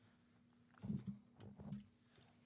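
A man's faint, low-pitched murmur in two short bursts around the middle, with quiet before and between them.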